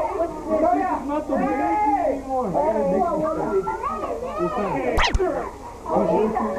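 Several people talking and laughing over one another. About five seconds in come two sharp clicks close together with a quick rising squeak.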